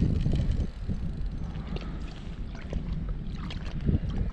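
Wind buffeting the microphone, a steady low rumble that is loudest about the first second, over water lapping at a small inflatable boat, with scattered light clicks and ticks.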